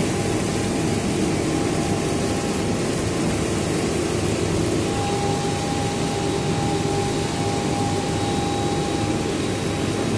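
Vertical multistage centrifugal pump running steadily, feeding a hydrocyclone whose slurry outflow pours into plastic drums. A steady whine rides on the noise and grows stronger about halfway through.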